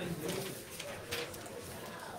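Indistinct low murmur of voices in a meeting room, with a few light clicks and the rustle of people moving about.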